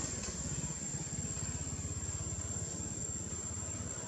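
An engine running with a fast, even low throb, under a steady thin high-pitched tone.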